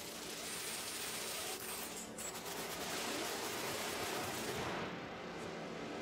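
Anime energy sound effect: a dense, steady crackling rush of noise as glowing blue energy fills the scene. Its hiss thins out at the top about five seconds in.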